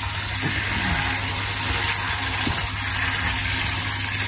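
Paneer cubes in a creamy yogurt sauce sizzling in a nonstick frying pan as a silicone spatula stirs them, a steady hiss over a low hum.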